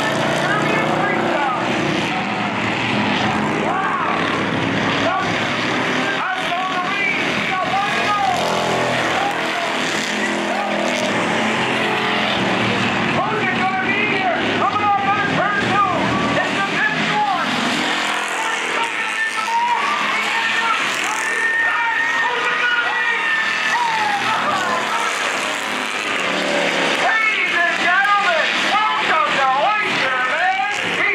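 Street stock race cars running at speed around a short oval track, engines loud throughout, with a voice talking over them the whole time.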